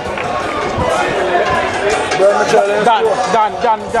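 Several people's voices shouting and calling out at once after a goal in a football match, overlapping and getting busier about halfway through.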